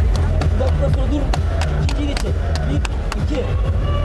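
Arena music during the break between rounds, with a heavy repeating bass line and sharp percussive hits, and voices in the background.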